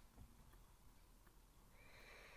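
Near silence: faint room tone, with a faint knock shortly after the start and a faint, brief hissy sound near the end.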